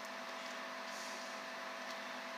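Quiet room tone: a steady faint hum over a soft hiss, with no distinct event.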